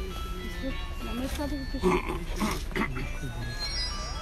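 Indistinct voices talking, with music playing underneath and a low steady rumble.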